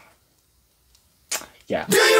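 Near silence, then a short whoosh sound effect about a second and a half in and another sweeping down just before intro music starts.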